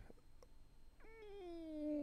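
A cat meowing: one drawn-out meow starting about a second in and lasting just over a second, sliding slightly down in pitch.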